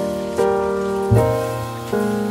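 Gentle background music: a sustained chord is struck anew three times, each one ringing and slowly fading.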